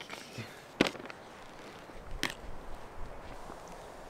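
Foil ration pouch (MRE entrée) being handled and torn open by hand: a few short, sharp crinkles and rips, the loudest about a second in and another a little after two seconds.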